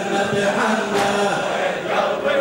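A large crowd of men chanting a Shia mourning latmiyya refrain together in long held notes, with one sharp unison chest-beat slap about halfway through.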